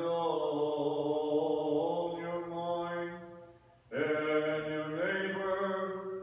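A man chanting the Gospel reading in Orthodox style, intoning the text on a nearly level reciting tone with long held notes. Two phrases, with a brief pause for breath a little over halfway.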